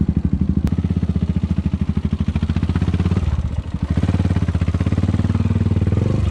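Suzuki Thunder 250 motorcycle's single-cylinder engine running at low speed with a steady, even pulse. It eases off briefly a little past halfway, then picks up again.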